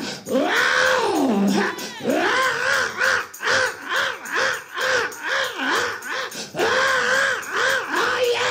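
A man's voice through a handheld microphone, chanting in the sung, whooping style of a sermon's climax rather than speaking: first a long falling cry, then a quick run of short sung syllables at about two or three a second, then long held tones near the end.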